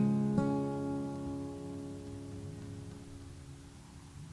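Acoustic guitar's closing chord: strummed again about half a second in, then left to ring and slowly fade away as the song ends.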